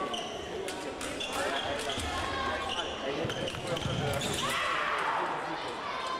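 Reverberant sports-hall ambience: indistinct voices with scattered knocks, thuds and clicks throughout.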